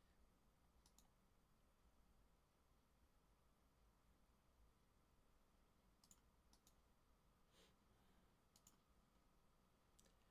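Near silence: faint room tone with a few soft computer mouse clicks, one about a second in and a handful between six and nine seconds.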